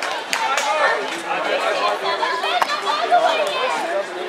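Several people talking and calling out at once, with a few sharp slaps of a volleyball being hit, the loudest about two and a half seconds in.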